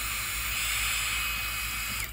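Handheld craft heat gun blowing steadily with an even airy hiss, drying a thick wet coat of Mod Podge on wood.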